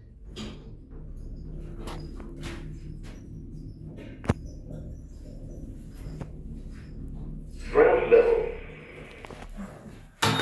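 Stannah passenger lift car travelling, its drive giving a steady low hum, with one sharp click about four seconds in. A brief louder sound comes about eight seconds in, and the hum dies away just before the end.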